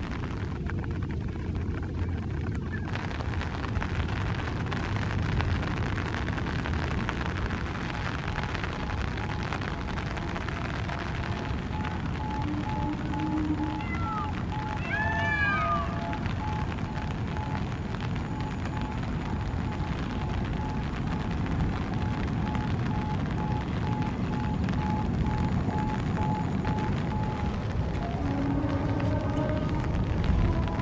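Steady rain and wind, a continuous wash of noise. About halfway through, a few short chirps, with a faint repeating tone running through the middle part.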